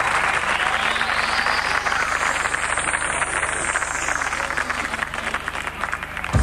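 Audience applauding, the applause slowly dying away.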